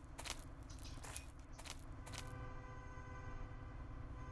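Faint scuffing and a few short crunching steps on dry debris, then, a little past halfway, a faint steady hum with a few thin tones.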